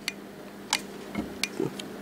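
Quiet room tone with a faint steady hum and four short, sharp clicks scattered through the two seconds.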